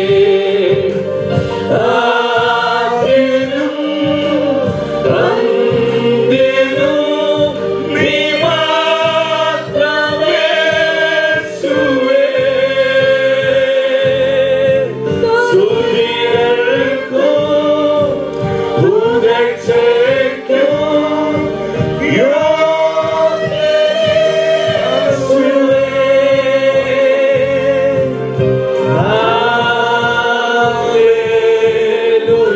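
Two women and a man singing a Malayalam Christian worship song into microphones, amplified, with long held and gliding notes.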